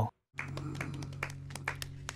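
A few people clapping their hands, an irregular patter of claps, over a low steady hum.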